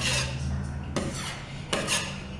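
A steel drywall knife scraping across drywall in three short strokes: joint compound being forced into bubble holes and scraped off flush.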